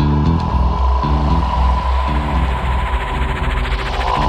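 Downtempo psy-chill electronic music in a sparse passage: deep sustained bass and synth chords under a steady high synth tone, with the hi-hats dropped out.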